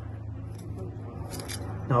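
Small steel hand trowel digging into loose soil in a raised bed, giving a few faint scrapes, over a steady low hum.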